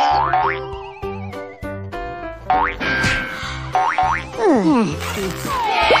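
Cartoon sound effects over upbeat children's background music with a steady beat: springy boings that rise quickly in pitch, heard several times, then a few falling swoops near the end.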